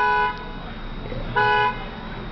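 A car horn sounds in a long blast that cuts off just after the start, then gives one short honk about a second and a half in.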